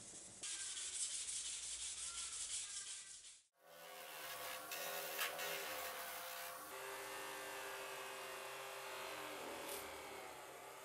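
A steel knife blade being rubbed back and forth on sandpaper by hand. About three and a half seconds in, this cuts to a bench grinder motor running steadily while the blade is pressed against its wheel, adding a scraping noise over the motor's hum.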